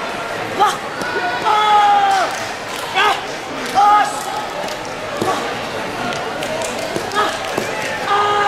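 A boy's short, sharp kiai shouts during a traditional sword form, the longest about one and a half seconds in, with a few dull thuds on the foam mats, over the chatter of a large tournament hall.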